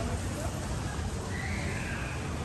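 Steady outdoor background noise with a strong low rumble, the kind a moving handheld microphone picks up outdoors. A faint high call or voice comes in a little over a second in.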